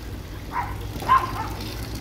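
Water running steadily from the outflow pipe of a homemade jug siphon pump into a fish pond. A brief pitched call sounds about half a second to a second in.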